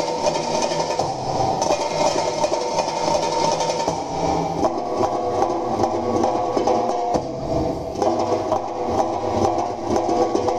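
Belly-dance music playing: a sustained melody line over a steady rhythm of light percussion.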